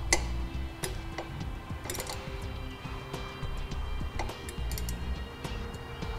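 Socket ratchet clicking in short, irregular strokes as a lock nut is tightened onto a Phillips machine screw, over background music.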